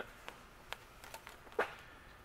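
Faint scattered clicks and light knocks of a black plastic barb fitting and clear vinyl hose being handled and fitted together, with one louder short knock about one and a half seconds in.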